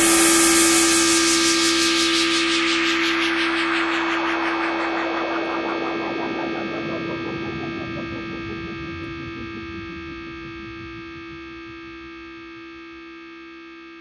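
A held electronic chord, the last sound of a funk track, ringing on alone after the beat stops and dying away steadily, growing duller as its high end fades first.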